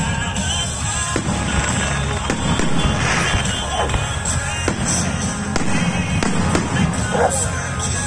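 Aerial fireworks shells bursting overhead, a sharp bang about once a second, over loud music.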